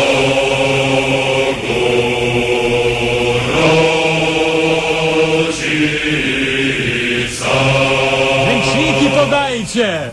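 Voices singing a slow, chant-like melody in long held notes, the pitch changing about every two seconds, with a wavering voice sliding in pitch near the end.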